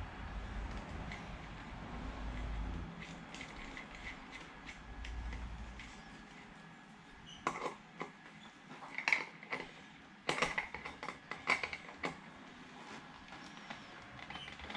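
Scattered sharp clicks and light metallic clinks of hand tools and wheel parts being handled, most of them in the second half. A low rumble fades out about three seconds in.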